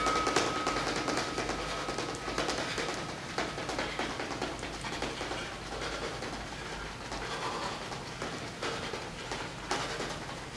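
Rapid footsteps and shoe scuffs on a wooden floor during a fast-feet boxing drill, a quick, uneven patter of small taps.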